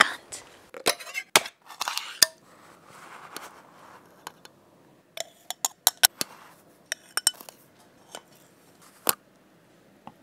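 Metal spoon in a tin of Milo powder and a drinking glass: a quick run of sharp clinks and taps, then one louder clink shortly before the end. A few knocks and a rustle in the first two seconds.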